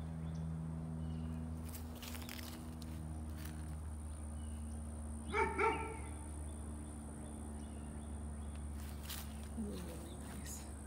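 A dog barks twice in quick succession about halfway through, over a steady low hum.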